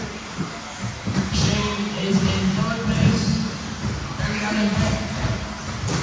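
Indistinct speech with background music, echoing in a large hall.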